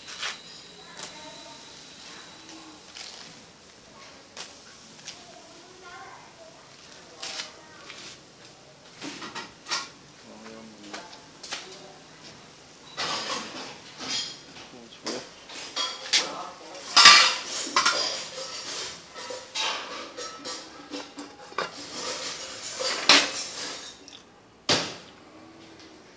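Water boiling in a large aluminium pot, with repeated clinks and clatter of metal on the pot as leaves are added and stirred in. There is a final knock just before the end as the aluminium lid goes on, after which it is quieter.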